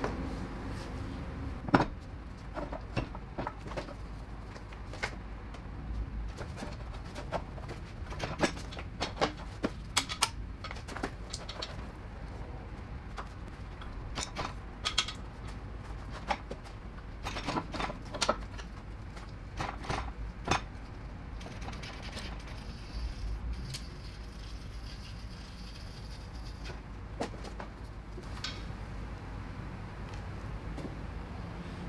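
Scattered metallic clinks and knocks as a ZF 6HP26 automatic transmission is worked loose from the engine and lowered on a transmission jack, over a steady low hum. The knocks are most frequent in the first two thirds and thin out later.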